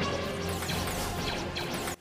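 Action-scene soundtrack from an animated series: music under a dense run of crashes and impacts. It drops away suddenly at the end.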